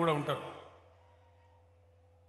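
A man's speech trails off in a drawn-out syllable falling in pitch, ending about half a second in; after that only a faint steady low hum remains.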